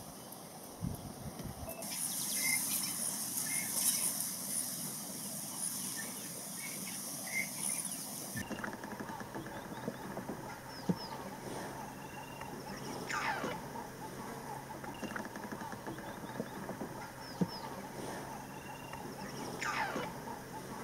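Bush ambience with birds calling. A high steady hiss fills the first third. After a change in the background, two loud sweeping bird calls stand out, one midway and one near the end.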